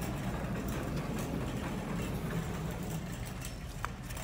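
Steady low rumble of store background noise picked up by a handheld phone, with a faint click near the end.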